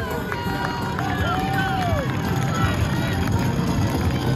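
Wheeled plastic RV waste-tank totes rolling over asphalt with a steady low rumble as contestants run dragging them, while spectators shout and cheer, one long rising-and-falling call about a second in.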